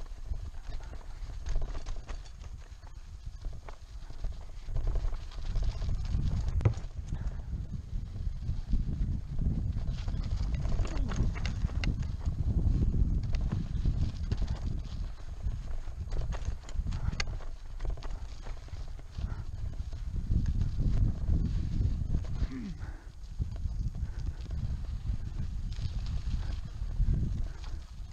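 Wind rumbling on the camera microphone while a road bike's tyres grind over a rutted, sandy dirt track, with occasional sharp knocks and rattles as the bike jolts over bumps.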